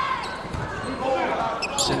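A volleyball rally in an indoor arena: a sharp smack of a player hitting the ball near the end, over crowd noise.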